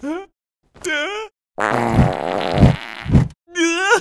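Cartoon fart sound effect: a long buzzy fart of about a second and a half with three deeper pulses in it, after a couple of short vocal noises.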